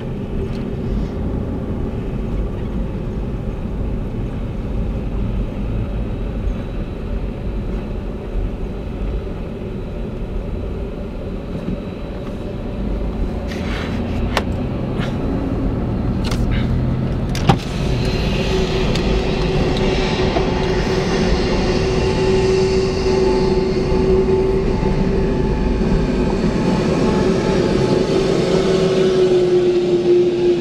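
Car driving slowly, heard from inside the cabin as a low steady rumble. A few sharp clicks come about halfway through. Then a steady whine with a hiss above it joins and grows louder toward the end.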